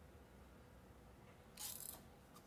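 Near silence, then a brief rustling swish near the end as hair is clamped and handled with a hair iron.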